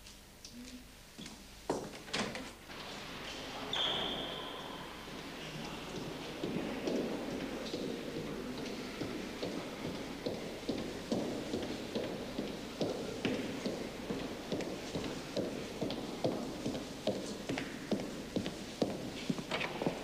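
Hard-soled shoes walking at an even pace along a hard corridor floor, about two steps a second. Before the walking, a couple of knocks come about two seconds in and a short high squeak about four seconds in.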